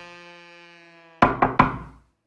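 A held music note fades out, then a little over a second in come three sharp knocks on a door.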